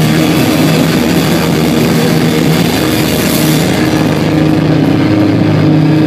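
Live punk rock band playing loud: distorted electric guitars and bass holding low droning notes in a steady wall of sound, with the bright high end thinning out a little past halfway.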